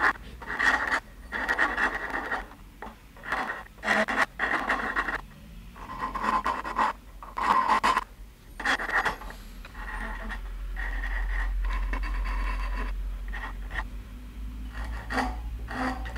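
Hand file strokes on the curved edge of a padauk guitar headstock with an ebony veneer: short, irregular scraping strokes with brief pauses between them, and a low hum for a few seconds midway.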